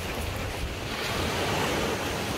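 Small waves from Lake Turkana washing onto a sandy shore, with wind rumbling on the microphone.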